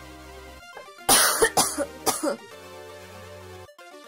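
Synthwave background music with held chords, broken about a second in by three loud coughs in quick succession over about a second and a half.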